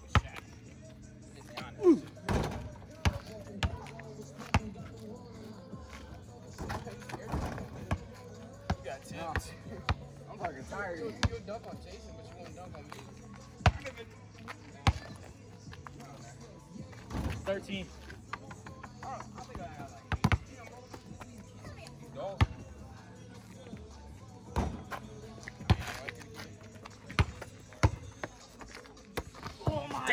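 A basketball bouncing on asphalt street pavement during a pickup game: many sharp thuds at uneven intervals as it is dribbled and played, with some louder single impacts.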